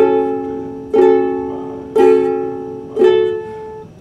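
Ukulele strummed four times, about a second apart, each chord left to ring and fade before the next.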